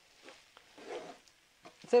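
Wooden spatula stirring a crumbly vada-and-onion mixture in a nonstick frying pan: faint scraping and shuffling, loudest about a second in, with a few light clicks near the end.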